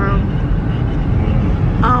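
Steady low rumble of a car driving, heard inside the cabin.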